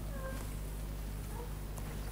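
A pause between spoken phrases: a steady low hum in the room, with a faint, brief pitched sound near the start.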